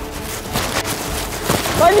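Quick footsteps and scuffling as people run across artificial turf, a quick patter of knocks about half a second in.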